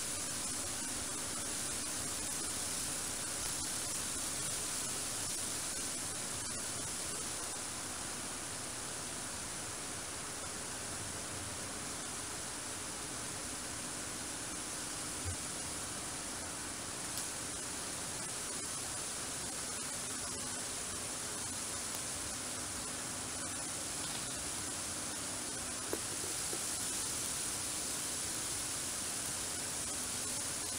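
Steady radio static: the hiss of a software-defined receiver tuned to the Soyuz spacecraft's voice downlink near 121.75 MHz while nobody is transmitting speech, with faint steady low tones under the hiss and a couple of tiny clicks.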